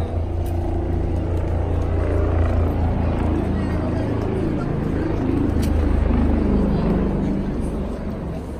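Street ambience: a steady low rumble of road traffic, with people's voices chattering over it.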